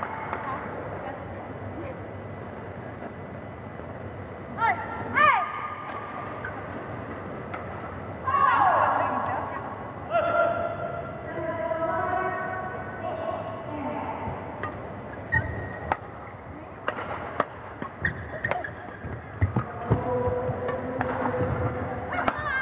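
Badminton court sounds: shoes squeaking on the court floor and voices between points, then a rally with sharp racket-on-shuttlecock hits and more shoe squeaks over the last several seconds.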